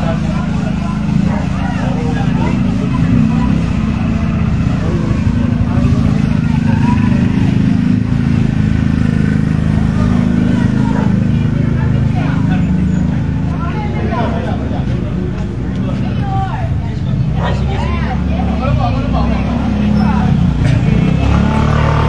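Crowd talking in the street over a steady low engine rumble, from a motorcycle tricycle running among the people.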